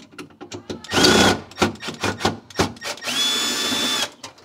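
Cordless drill-driver backing out the screws of a freezer's back panel. It runs in a short burst about a second in, then clicks and knocks as it is handled, then a steadier whine near the end.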